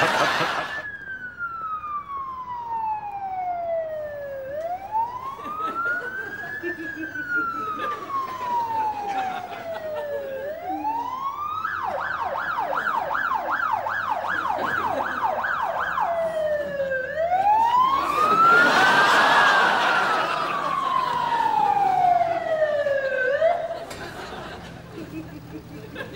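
Ambulance siren wailing, each cycle a slow rise and a longer fall repeating about every six seconds, switching to a fast yelp of about four pulses a second for some four seconds midway, then back to the wail. A louder rush of passing vehicle noise swells under it about three quarters of the way through.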